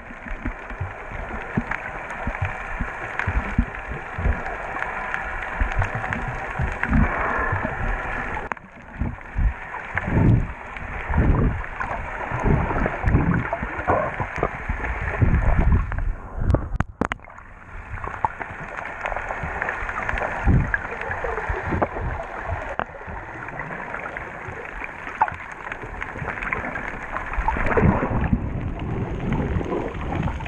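Water sloshing and gurgling around a submerged camera housing, muffled, with irregular low thumps throughout and a brief drop in the sound about seventeen seconds in.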